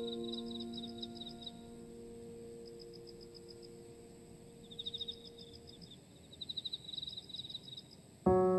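A soft piano chord dying away over the first half, under a nature-sound bed of high, rapid chirping trills that repeat every second or two and grow louder near the end.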